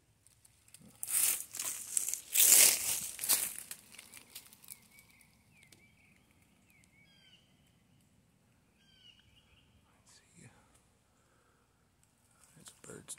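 Dry pine straw and leaf litter crunching and rustling loudly for about three seconds as brush is pushed through, then a small bird chirping in short, repeated notes, with a brief faint rustle near the end.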